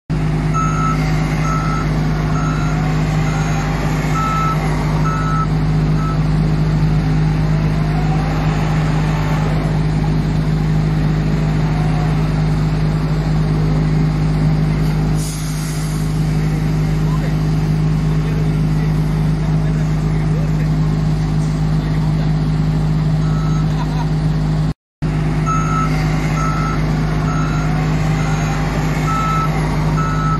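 Hitachi ZW310 wheel loader's diesel engine running steadily as it works, with its reversing alarm sounding a regular series of beeps near the start and again near the end. The sound cuts out for a moment about five seconds before the end.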